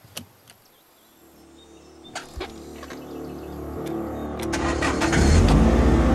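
A click, then a car's engine rumble that swells steadily louder over about five seconds, with two more clicks a little past two seconds in.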